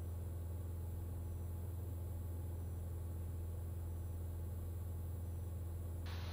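Steady low drone of a Cirrus SR20's four-cylinder engine and propeller in flight, an even hum with no change in pitch.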